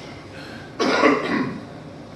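A man coughs once into his hand, a single short burst about a second in.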